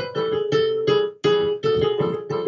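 Piano playing a short, simple childhood composition in C major: detached notes about three a second, with one note repeated throughout, and a deliberate wrong, dissonant note in the tune.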